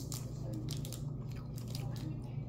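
Kit Kat candy bar wrapper crinkling and crackling in someone's hands as it is opened: a scatter of short crackles over a low steady hum.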